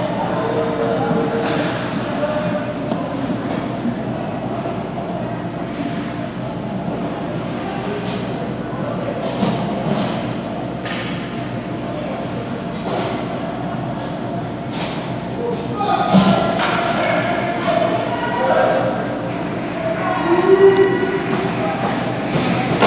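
Ice rink ambience during a stoppage in play: a steady drone with indistinct voices of spectators and players echoing in the large arena, and occasional short knocks. The voices grow louder about two-thirds of the way through and again near the end.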